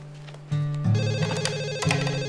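White push-button desk telephone ringing with a fast electronic trill, starting about a second in, over background music.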